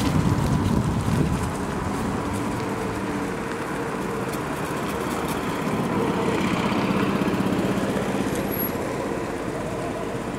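Cars driving past close by on a street: one going by at the start, then another car approaching and growing louder past the middle.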